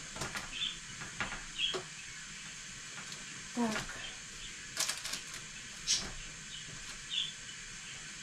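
Bell peppers being turned over by hand on a metal baking tray: a few short, soft taps and rubs against the tray.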